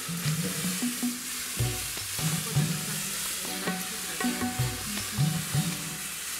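Coffee parchment beans being stirred and spread by hand on a cement drying floor: a steady rustling hiss of many small beans sliding over each other and the floor.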